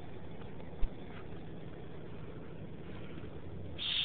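Steady low rumble of an idling vehicle engine, with one short thump about a second in.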